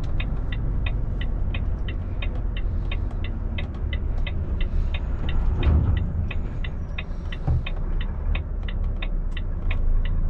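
Turn-signal indicator ticking inside the lorry cab, about three even ticks a second, over the low, steady rumble of the truck's diesel engine and road noise.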